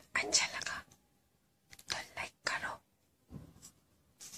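A woman whispering close to the microphone in three short breathy phrases, with a fainter one near the end.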